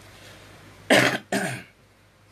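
A man coughing twice in quick succession, about a second in.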